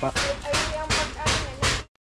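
A kitchen knife chopping on a round wooden chopping board, about six quick strokes, with voices in the background. The sound cuts off suddenly near the end.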